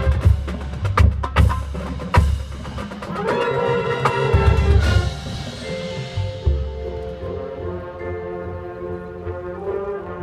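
Marching band playing its field show: heavy drum and percussion hits with mallet percussion over held band chords for the first half, then settling into softer sustained chords with a single hit.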